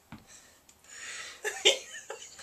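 A man's stifled laughter: a breathy exhale, then two short sharp bursts about a second and a half in.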